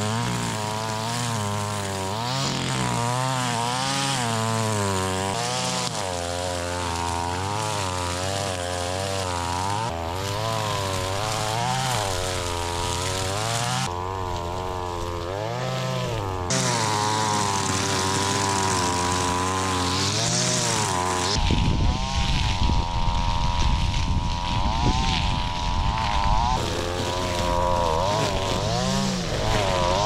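Gas string trimmer (weed whacker) running while cutting tall grass and weeds, its engine speed rising and falling again and again as the throttle is worked. About two-thirds of the way through, a rougher low rumble joins the engine.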